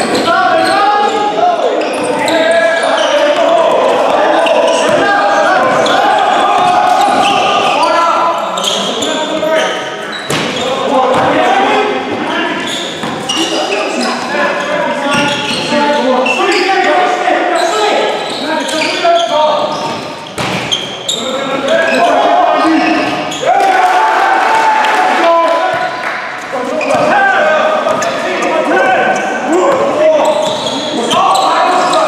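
Basketball dribbled and bouncing on a wooden sports-hall court during play, with indistinct voices of players and onlookers calling throughout, all echoing in the large hall.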